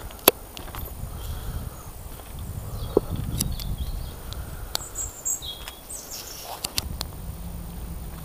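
Footsteps on a woodland path, with irregular sharp snaps and crunches of twigs and leaf litter underfoot, over a low rumble of wind buffeting the handheld camera's microphone.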